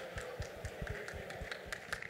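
A run of irregular light taps and low thumps, about six a second, over faint room noise.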